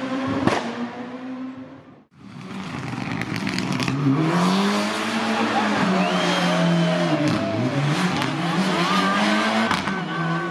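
Rally car engines on a tarmac stage: one car's engine fades as it drives off and cuts out about two seconds in, then a second rally car's engine revs up hard, drops in revs briefly about two thirds of the way through and picks up again. Faint tyre squeal runs over the second car's pass.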